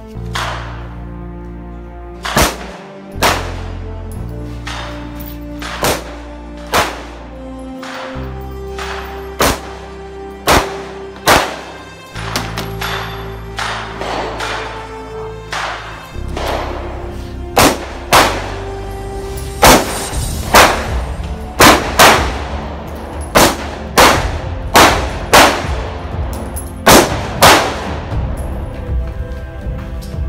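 About two dozen gunshots fired in quick strings at steel targets, with a pause of a few seconds midway for a reload, the shots coming faster and louder in the second half. Background music with a steady low bass runs underneath.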